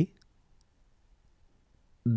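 Near silence: room tone between two spoken letters, with a couple of very faint clicks shortly after the start.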